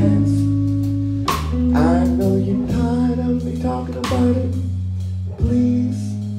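A blues and soul band playing live: electric bass, electric guitar and drum kit. Sharp drum hits land about a second in, around four seconds, and just before the end.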